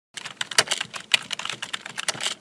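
Computer keyboard typing: a fast, dense run of keystroke clicks that starts just after the beginning, matching text being typed into a search bar.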